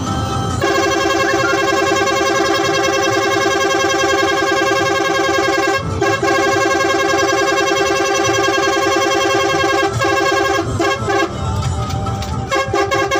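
Vehicle air horn held down in one long blast of about five seconds, then, after a brief break, another of about four seconds, followed by several short toots near the end.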